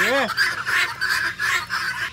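A flock of domestic fowl calling together in a pen, many overlapping calls running on without a break.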